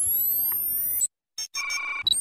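Synthesized sci-fi interface sound effects of a loading animation: high electronic sweeps rising in pitch that cut off suddenly about a second in, a brief silence, then a steady electronic beep of several tones near the end.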